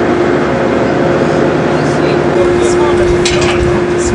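Steady machinery noise on a ship's open deck: a constant hum with one held tone under an even rush of noise, with indistinct voices in the second half.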